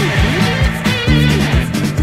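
Rock music with electric guitar and bass over a steady drum beat, in an instrumental passage without singing; a bent, wavering guitar line comes about halfway through.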